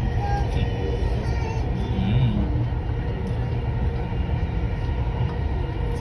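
Steady low rumble of a moving metro train heard from inside the carriage.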